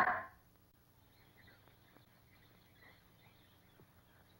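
A music cue dying away in the first half-second, then a faint jungle background with scattered soft bird chirps.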